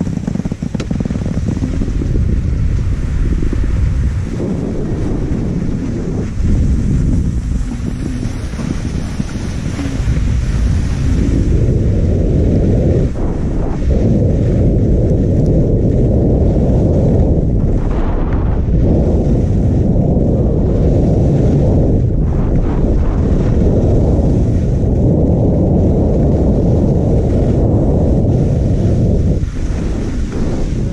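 Wind buffeting a GoPro Hero5 Black's microphone on a downhill ski run, a loud, steady low rumble mixed with skis sliding on snow. It grows louder about ten seconds in as the skier picks up speed.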